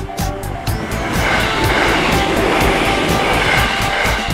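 Rush of a passing electric train, swelling from about a second in and falling away near the end, over background music.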